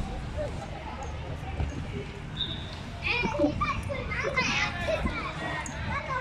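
Children's voices shouting and calling during soccer play, with a burst of high-pitched calls from about three seconds in, over a steady low rumble.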